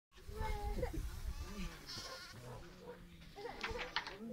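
Sheep and goats of a flock bleating as they come along a path, with people's voices mixed in.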